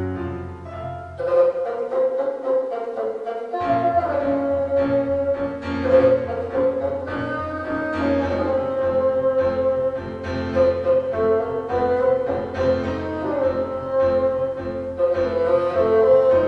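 Bassoon playing a slow tango melody in long held notes over a piano accompaniment played back from a computer. The bassoon comes in about a second in, after the piano alone.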